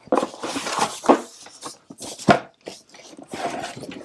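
Rustling and knocking of packaging as the Tesla Gen 3 Wall Connector and its heavy coiled charging cable are lifted out of the cardboard box, with one sharp knock about two and a quarter seconds in.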